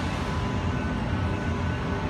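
Steady low rumble and hum of a stationary Tangara electric train at the platform, its onboard equipment running, with a few faint steady tones over it.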